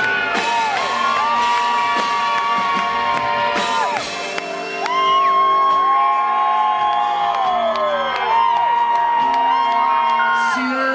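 A live rock band playing an instrumental passage, led by electric guitar with long sustained notes that bend and slide down at their ends. Whoops from the crowd ride over the music.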